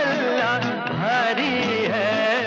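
Hindi film song: a male voice singing a wavering melody over an orchestral accompaniment with a steady pulsing rhythm.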